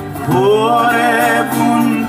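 Live Greek tsamiko song: a singer's voice slides up into a note about a quarter second in and holds it with vibrato, over acoustic guitar accompaniment.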